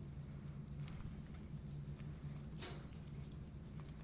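A goat licking and nibbling a person's fingers: faint wet mouth clicks, the clearest about a second in and near three seconds, over a steady low hum.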